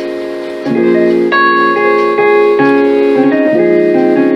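Keyboard playing drop-2 voiced chords: a held B♭ minor 11 chord, then a new chord struck about two-thirds of a second in. Notes change every half second or so as it moves to a B♭ 7 sus2 sus4 chord.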